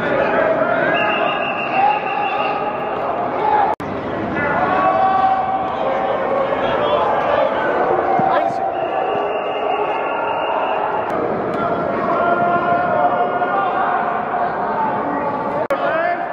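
Many voices of players and coaches talking and calling out at once, with no single clear speaker, in a large indoor hall. The sound drops out briefly about four seconds in and again near the end.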